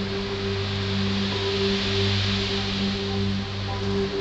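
Marimba holding sustained low notes as a soft mallet roll, the tones steady, with a light rustle of mallet strokes above them.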